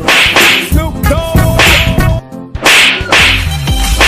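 Dubbed-in whip-crack and slap sound effects for blows in a staged fight: several sharp swishes about a second apart, over background music.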